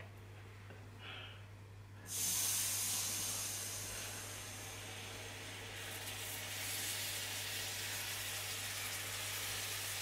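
Hot caramel hissing and sizzling as cream is poured into a saucepan of bubbling sugar syrup. The hiss starts suddenly about two seconds in, then slowly eases into a steady sizzle.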